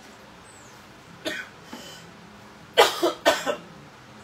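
A person coughing: one short cough, then a quick run of about four louder coughs about three seconds in.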